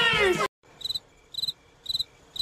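Cricket chirps used as the stock awkward-silence sound effect: short, high chirps about every half second, three in all, after a shouted greeting that ends about half a second in.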